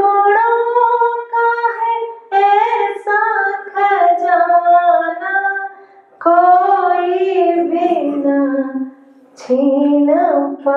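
A woman singing solo and unaccompanied, in long held notes grouped into phrases with short breaks for breath between them.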